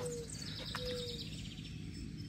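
Birds chirping in the background: a quick run of high chirps in the first half, over a low steady outdoor hum.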